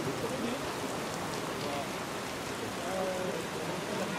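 Steady hiss of noise, with faint voices shouting now and then, about a second and a half in and again near three seconds.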